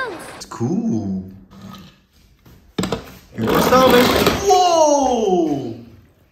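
A person's voice calling out in one long exclamation that falls steadily in pitch. It begins with a loud noisy burst about three and a half seconds in.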